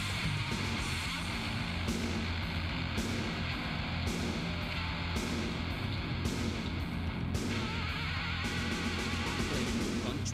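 Instrumental heavy metal passage with no vocals: electric guitar riffing, its high end swelling in a regular pulse about once a second.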